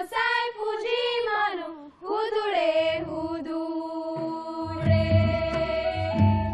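Women's voices singing a Santhali folk song in long chant-like phrases, ending on a long held note. Low drum beats come in near the end.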